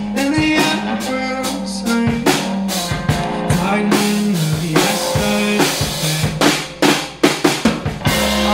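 A live band playing an instrumental passage with the drum kit to the fore, struck steadily over a low held note line, with a quick run of drum hits near the end.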